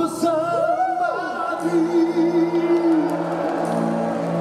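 Live band music with a singer, who slides between notes and then holds one long note with vibrato over sustained chords.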